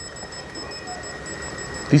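Retail anti-theft alarm tags strapped to power-tool boxes beeping faintly, a high-pitched electronic tone with a rapid repeating chirp above it, set off by the boxes being handled.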